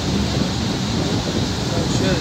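Wind rushing over the microphone at the open window of a moving vehicle, mixed with steady road and engine noise.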